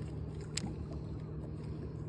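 Steady low mechanical hum of a fishing boat's machinery, with a single light click about a quarter of the way in as the lip-grip scale closes on the perch's jaw.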